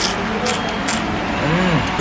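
Crunching as a bite of crispy fried food is chewed: three sharp crunches about half a second apart, followed by a short rising-and-falling hum of a voice near the end.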